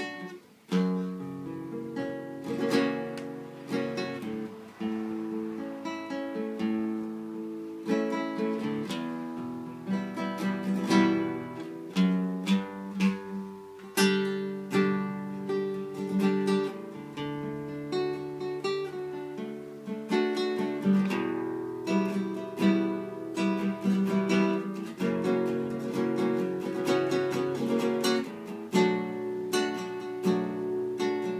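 Nylon-string classical guitar played solo, a continuous flow of plucked notes and struck chords with a brief pause about a second in.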